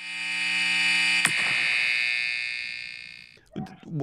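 A buzzy electronic tone swells up and then fades away, marking the break between two podcast segments. A sharp click about a second in cuts off its lower part, and it has died out shortly before the end.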